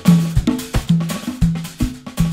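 LP congas played with bare hands in a Latin jazz groove: a steady run of sharp strikes with short pitched open tones, about three strong strokes a second with lighter hits between.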